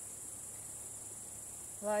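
Crickets chirring in a steady, high-pitched, unbroken drone.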